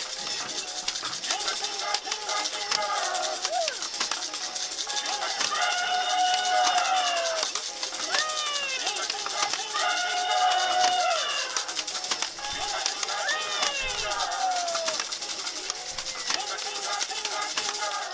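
Toy maracas shaken continuously while the toy elephant plays a children's TV theme tune with singing.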